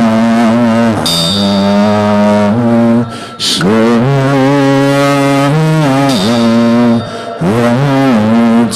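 Slow melodic Buddhist nianfo chanting of Amitabha's name: voices hold long, drawn-out notes that step and slide between pitches, with short breaks for breath about a second in, around three seconds in, and near the end.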